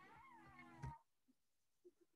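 A faint animal cry: one drawn-out, high call that wavers in pitch and fades out about a second in, then near silence.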